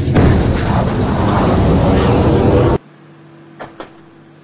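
Loud roaring rush of a surface-to-air missile launch heard from right beside the launcher. It cuts off suddenly about three seconds in, leaving a much quieter low hum with two short clicks.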